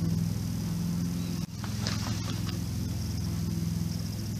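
Steady low background hum with a few faint clicks, like a cardboard box being handled.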